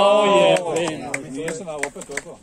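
A man's loud, drawn-out shout, then a few sharp knocks about three a second, heard over faint voices.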